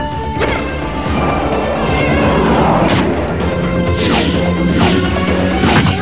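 Cartoon battle sound effects: several crashes and impacts a second or so apart in the second half, over steady background music.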